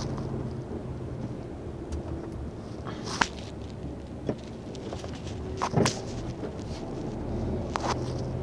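MAN TGX truck's diesel engine running steadily at low speed, heard from inside the cab, with a few short sharp clicks or knocks scattered through.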